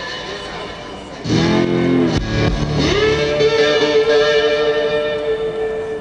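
Lap slide guitar played live: a chord is struck a little over a second in, with a deep thump about two seconds in, then the slide glides up into a long held note.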